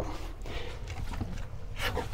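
Hands mixing soft, wet lepinja dough in a plastic tub: faint squelching and slapping, with one short louder squelch near the end.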